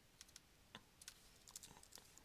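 Faint computer keyboard typing: a short, uneven run of keystroke clicks, coming closer together in the second half.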